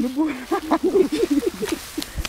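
A person's voice talking without a break, words not made out.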